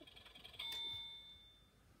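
A single bell-like chime about half a second in, a clear ringing tone that fades away over about a second.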